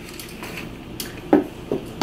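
Chargers and cables clattering as they are rummaged out of a backpack, with a sharp click about a second in and two short knocks soon after as things are dropped.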